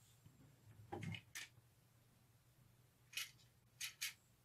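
Near silence with a few brief, faint rustles and clicks from hair and a handheld automatic hair curler being handled: one about a second in, and two near the end.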